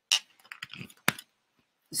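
Handling noise from over-ear headphones being picked up and put on: a few faint rustles and small knocks, with one sharp click about a second in.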